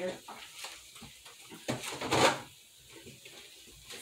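Faint kitchen handling sounds while milk is fetched from the refrigerator: a few soft knocks, then a brief whoosh about two seconds in.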